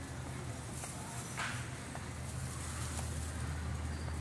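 Steady low hum of a large store's background noise, with a short hiss about one and a half seconds in and a few faint clicks.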